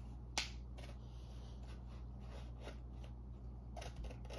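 Scissors snipping through paper: a few short cuts, the first and sharpest about half a second in, over a low steady hum.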